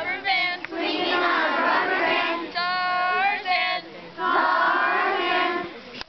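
A small group of girls singing a nonsense camp song together in unison, with one note held briefly about halfway through.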